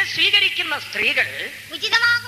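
A man's voice preaching in Malayalam.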